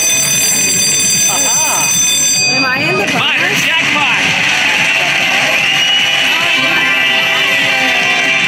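Slot machine's Minor progressive jackpot celebration: a ringing chime tone for about the first two and a half seconds, then busy celebratory music while the win counts up. Short excited voice cries come in about one and a half and three seconds in.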